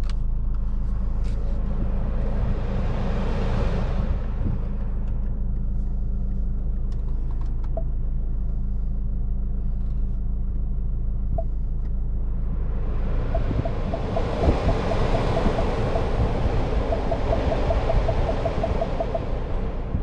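Cab of a Ford Ranger pickup with its 2.2 four-cylinder turbodiesel, driving on a dirt road: steady low engine and tyre rumble. A rushing hiss swells up twice, the second time longer, and during it come runs of quick, soft ticks, about five a second.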